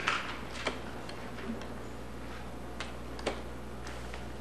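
A pause in speech holding a steady low hum and a handful of sharp, irregular clicks, the loudest about three and a quarter seconds in.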